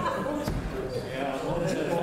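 Indistinct conversation among several people in a large room, with a single dull thump about half a second in.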